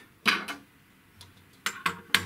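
Light metallic clicks and clatter of a small metal caliper being handled and set down on a wooden table, the sharpest clicks near the end.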